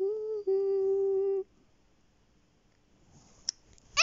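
A child's voice humming two held notes: a short one, then a longer, slightly lower one, together lasting about a second and a half.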